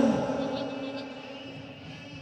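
A man's voice over outdoor loudspeakers dies away in a reverberant tail over about a second and a half, leaving a faint steady background hum.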